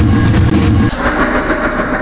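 Loud, steady machine rumble that turns duller about a second in.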